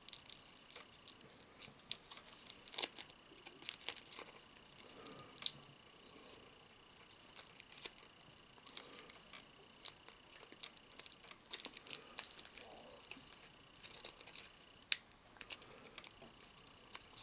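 Fingers pulling apart crispy breaded fried food, close to the microphone: many small irregular crackles and tearing sounds.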